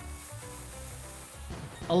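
Online slot game music playing quietly, a tune of low notes moving in short steps, with a faint hiss over it.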